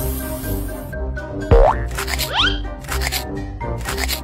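Children's background music with cartoon sound effects: a loud, sharply falling tone about one and a half seconds in, then quick rising tones and a few short swishes.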